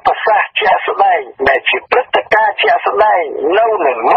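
Speech only: a voice reading continuously, with brief pauses between phrases, with a thin, radio-like sound that lacks high treble.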